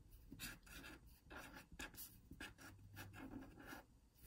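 Faint scratching of a felt-tip pen writing a word on paper, in a series of short strokes.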